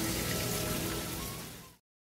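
Hot oil sizzling as fish fry: a steady crackling hiss that fades out near the end.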